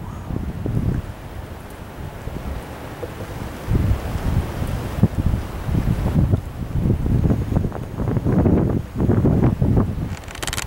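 Wind buffeting the camera microphone in an uneven low rumble, the gusts growing much stronger about four seconds in.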